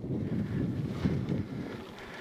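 Wind rushing over the camera microphone of a mountain bike riding dirt singletrack, with a low, uneven rumble from the bike rolling over the trail.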